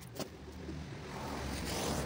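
A car passing on the street, its tyre and engine noise growing steadily louder. A short click comes just after the start.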